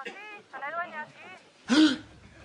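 Speech only: short lines of Spanish on a telephone call, ending in a short, loud exclamation near the end.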